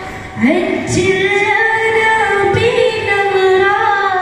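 A boy singing a Malayalam Nabidina song into a microphone, with long held notes that bend and slide between pitches; after a short breath, a new phrase begins about half a second in.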